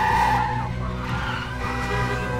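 Car tyres screeching as cars brake hard and skid, loudest at the start with another screech near the end, over sustained film music.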